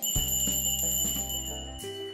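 A bell struck once, its high tone ringing steadily for nearly two seconds before cutting off, over sustained low chords of background music.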